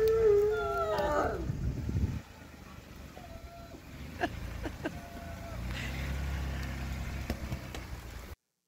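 A dog howling, a wavering pitched call that ends about a second in, followed by a low rumble and a few faint clicks.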